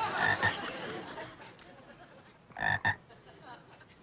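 Frog croaking: a short croak at the start, then a quick double croak about two and a half seconds in.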